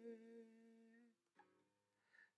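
An acoustic guitar chord rings out and fades, dying away about a second in. A faint short pluck or fret sound follows, and then near silence.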